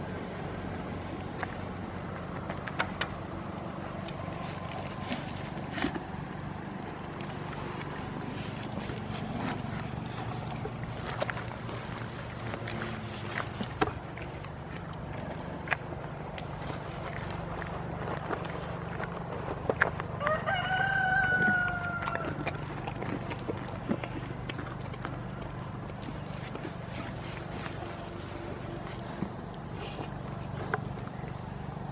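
A rooster crows once, about two-thirds of the way through: a single pitched call of about two seconds that dips slightly at the end. Underneath runs a steady low hum with many small clicks and rustles close to the microphone.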